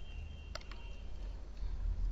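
Two quick computer mouse clicks about half a second in, over a steady low electrical hum and a faint high whine.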